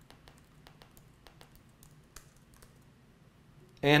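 Faint, irregular clicks of laptop keys being pressed.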